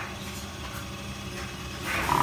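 Small automatic filter-bag packing machine running with a steady, low hum.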